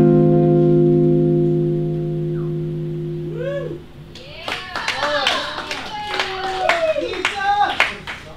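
An electric guitar chord rings out and fades for nearly four seconds, then stops. Then a small audience claps, with voices calling out.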